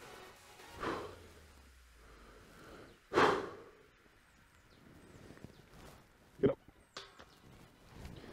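A sharp breath out as a disc golf putt is thrown, with a softer breath before it, then a short knock a few seconds later and a faint click, over quiet woodland background.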